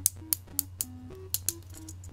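Ratchet joints on a Madtoys King of Beasts green lion robot toy clicking as a limb is worked, about six sharp clicks at uneven intervals.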